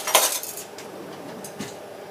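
Kitchen utensils clattering as they are handled: a sharp clatter right at the start, then a faint click about a second and a half in.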